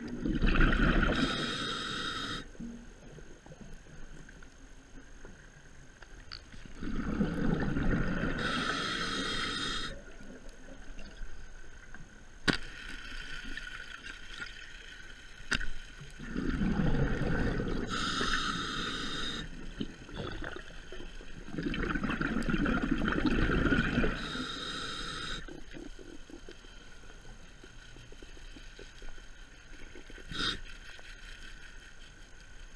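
Scuba diver breathing through a regulator underwater: four long breaths, each a rumble of exhaled bubbles with a hiss, coming every five to eight seconds. Two sharp clicks fall between the second and third breaths.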